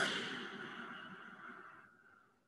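A man taking one long, deep inhale through the nose: a breathy hiss that starts strongly and fades gradually over about two seconds.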